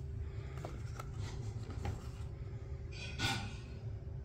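Photo prints being handled and set against a picture frame: a few light taps in the first two seconds, then a short paper rustle just after three seconds, the loudest sound. A steady low hum runs underneath.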